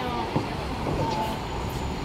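Street ambience: a steady low rumble of traffic with faint voices in the background.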